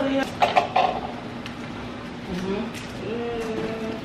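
Muffled, closed-mouth humming and murmuring from a person, with a few sharp clicks of kitchen items being handled on the counter about half a second in.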